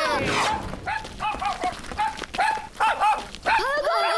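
A small dog yipping, a rapid run of short high yips, about three each second.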